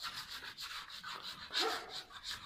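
Hand paint scraper rasping flaking paint off a plasterboard ceiling in quick repeated strokes, about three to four a second. The paint is peeling away because no primer/sealer was applied to the new plasterboard before painting.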